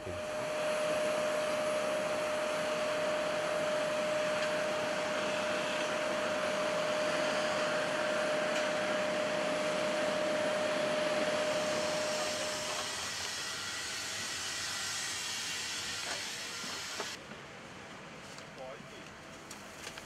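Steady rushing hiss with a constant hum, typical of aircraft and ground equipment running on an airport apron beside an airliner. The hum stops about two-thirds of the way through, and the noise drops lower near the end.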